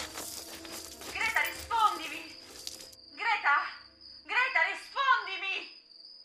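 A woman sobbing and whimpering in short wordless bursts over the steady high chirring of crickets, with a noisy rustle in the first few seconds.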